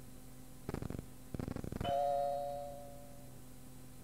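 Two short rattling buzzes, then the cassette's cueing chime: one bell-like tone that rings and fades over about a second and a half, marking that the next outgoing message follows in a few seconds.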